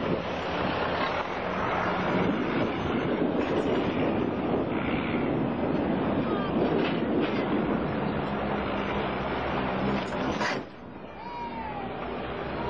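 Engine and wind-and-road noise of a vehicle on the move, heard from aboard it. The noise drops sharply about ten and a half seconds in, and a short high call that rises and falls follows just after.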